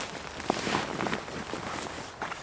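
Rustling and scuffing of tent fabric and an inflatable sleeping mat as a person crawls into a one-person OEX Bobcat 1 tent and sits down on the mat, with a few small crackles.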